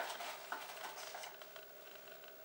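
Faint rustling of a cardboard box and its paper contents being handled, with a light click at the start and another about half a second in, then fainter rustles and ticks.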